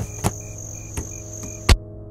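Crickets chirping steadily over a low sustained drone, broken by a few sharp clicks. A heavy hit comes near the end, after which everything cuts off suddenly.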